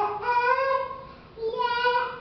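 Young girl singing a praise song alone, without accompaniment, holding long notes, with a short break for breath about halfway through.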